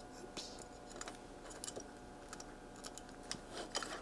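Faint, irregular small clicks and rattles of plastic test-lead hook clips and an oscilloscope probe being handled and clipped onto a circuit board, a little busier in the second half.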